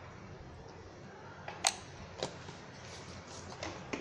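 Low steady room noise with a few short, sharp clicks: two near the middle, about half a second apart, and fainter ones near the end.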